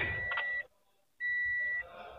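A car's in-cabin warning buzzer beeping twice, a steady high pitch about half a second on and half a second off. The car is a 2008 Toyota Yaris.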